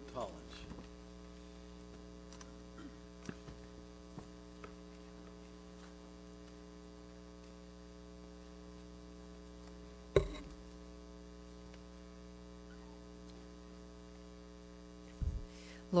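Steady electrical mains hum on the meeting room's sound system. A few faint ticks, a single sharp knock about ten seconds in, and a low thump shortly before the end.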